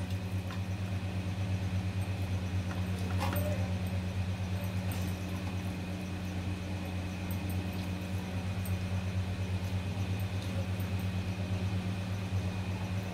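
A steady low machine hum with a fast, even flutter, and a faint short knock about three seconds in.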